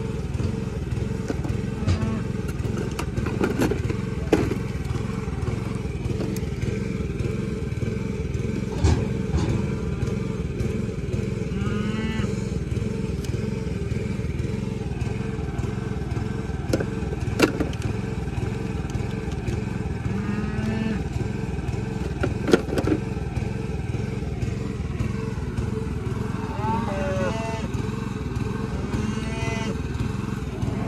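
A vehicle engine idling steadily. Over it come a few sharp clicks and clanks of metal tools being handled.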